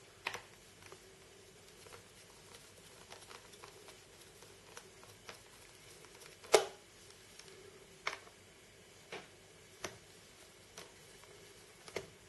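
Scattered light clicks and taps of a precision screwdriver handled against small metal screws and the laptop's drive bracket as the hard drive's retaining screws are worked loose, with one louder click a little past halfway.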